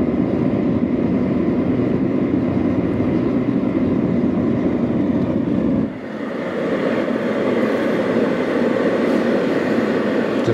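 Alkota diesel-fired radiant heater running, its burner and blower making a steady deep rumble. About six seconds in, the low rumble cuts out suddenly as the thermostat shuts the burner off, and a thinner, higher blowing sound from the fan carries on.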